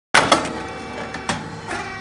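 Rice cake puffing machine (model 602) running: a steady machine hum with a sharp clack at the very start and a few mechanical clicks and knocks after it.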